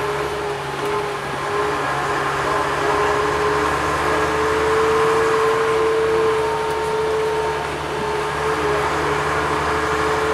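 A vintage single-deck bus's diesel engine running under way, heard from inside the passenger saloon. A steady whine rides over the engine hum, rising a little in the middle, easing off about eight seconds in, then rising again.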